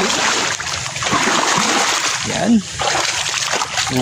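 Shallow creek water splashing and sloshing without a break as someone wades and stirs through it.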